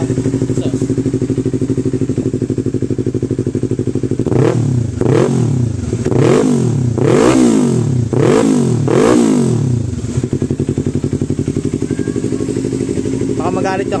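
Yamaha R3's 321 cc parallel-twin engine through a replica Yoshimura R77 slip-on exhaust, idling, then revved about six times in quick blips from about four seconds in to about ten seconds, each rising and falling back, before settling to a steady idle again.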